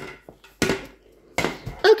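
Two short knocks about a second apart.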